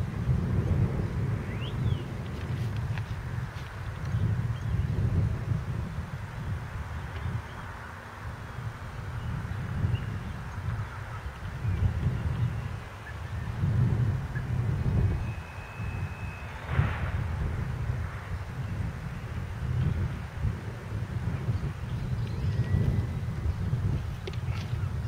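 Wind buffeting the microphone in uneven gusts, with a few faint bird calls.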